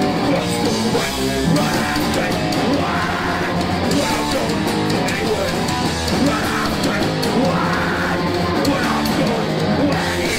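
Punk band playing live: distorted electric guitars, bass and drum kit at a fast, steady pace, with the vocalist shouting into a microphone.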